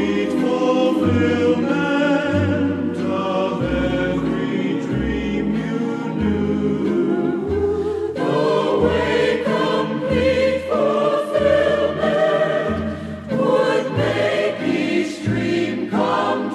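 Choir singing in harmony with an orchestra, a bass line stepping from note to note beneath, about one note every half second to second.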